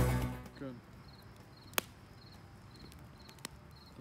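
Music fades out in the first half second, leaving quiet night ambience: crickets chirping in a steady run of short high pulses, with two sharp pops from a wood fire in a steel fire ring.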